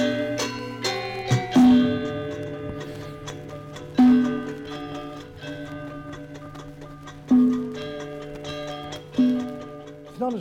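Gamelan orchestra recording: metallophones ringing in interlocking patterns, with one deep gong struck every two to three seconds to keep the rhythm. The gong stands out too loudly in the mix, a balance problem of this single-microphone mid-1950s location recording.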